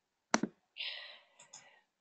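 A single sharp click, then a short soft breath lasting about half a second, picked up faintly by a video-call microphone.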